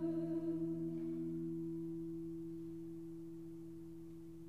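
Choir voices end in the first second or so of a sung chord, leaving a low, pure held note that fades away slowly and steadily.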